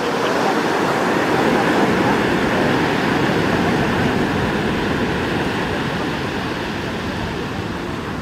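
Steady rushing of sea surf and wind at a seawall, easing off slightly toward the end.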